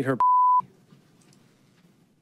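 Censor bleep: a single steady pure beep of under half a second that cuts in sharply on the end of a man's sentence and covers the next word, then stops just as suddenly.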